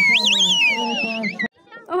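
Spectators cheering with a loud, high warbling whistle that trills and slides down in pitch, rising again just after the start before falling away, over a held shout. It cuts off about a second and a half in.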